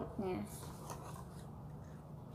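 Faint rubbing and light clicking of a thin metal chain-link watch bracelet being handled and adjusted between the fingers.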